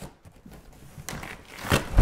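Clear plastic packing tape being peeled and torn off a cardboard box, with crinkling and scraping as the flaps are pulled open, and a sharp knock near the end.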